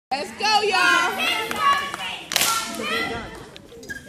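Girls' high voices calling out, with one sharp hand clap a little past halfway, then quieter.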